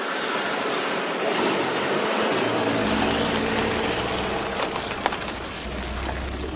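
A car driving along a road: a steady hiss of tyre and road noise, with a low engine rumble coming in about halfway through.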